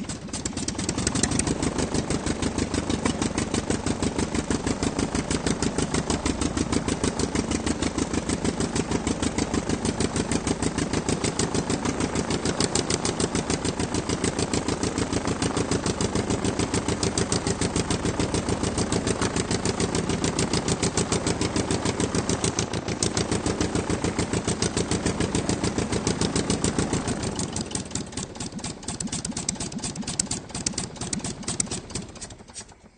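Aircraft piston engine running steadily at a raised speed, with a fast, even stream of firing pulses. Near the end it drops back to a lower, uneven idle.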